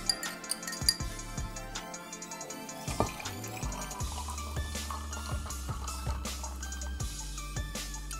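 Background music, with a cold drink being poured from a glass measuring cup over ice into a tall glass: liquid pouring and ice clinking against the glass.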